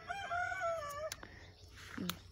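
A rooster crowing once: a single drawn-out crow lasting about a second in the first half, rising, held, then falling away.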